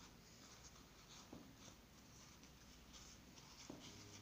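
Faint rustling and scratching of a paper towel being pressed and tucked over chopped parsley in a small glass jar, with two soft taps, one about a second in and one near the end.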